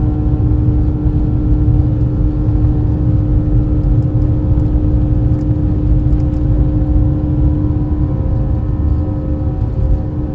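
Airliner cabin noise in flight: a steady, loud low rumble with a few constant engine hums over it.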